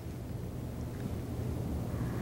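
Low, steady rumble of room noise with a faint hum underneath; no one is speaking.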